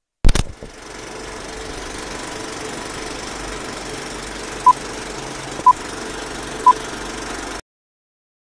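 Opening of an old stock film clip's soundtrack: a loud thump, then a steady hiss with a faint hum, broken by three short high beeps one second apart, cutting off abruptly near the end.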